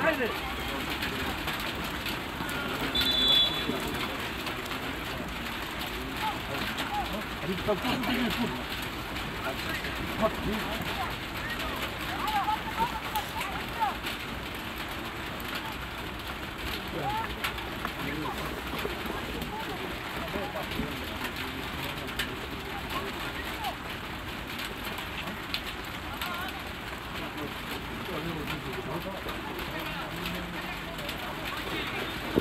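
Open-air football pitch ambience: a steady hiss with faint distant shouts of players and coaches. About three seconds in there is one short, high whistle blast.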